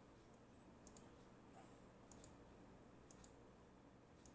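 Faint computer mouse clicks: three quick pairs of clicks about a second apart.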